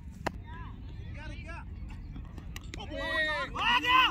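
Voices of cricket players calling out across the field, faint at first and louder near the end, over a steady low background rumble.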